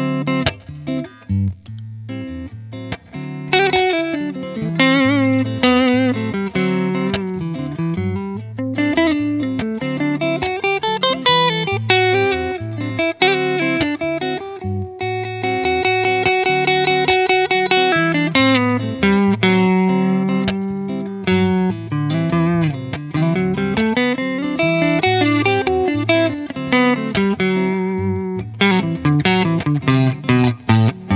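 Electric guitar (Nazangi) playing a melodic Dorian-mode line that climbs and falls over repeating low notes, with a long held note about halfway through.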